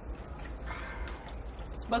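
A single faint bird call a little under a second in, over a steady low hum.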